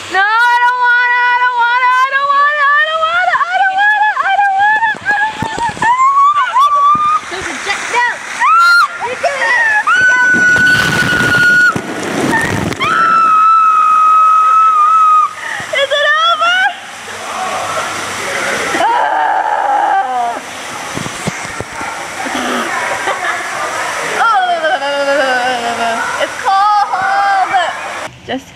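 A woman squealing and shrieking in long, high-pitched, wordless cries, some held for a couple of seconds, as a waterfall pours over her, with splashing and falling water throughout.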